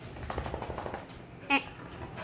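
A dog grumbling, a low pulsed rumble lasting about a second, from a dog impatient at being told to wait.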